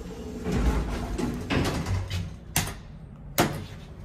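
Schindler 300A elevator's sliding doors running, with a low rumble and then two sharp clunks in the second half.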